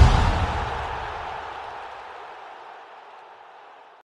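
The tail of a deep boom-like impact sound effect, its low rumble and hiss dying away steadily over the four seconds.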